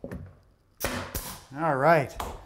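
Pneumatic brad nailer firing two quick shots about a second in, about a third of a second apart, driving brads into an oak wall cap. A man's short wavering vocal sound follows near the end.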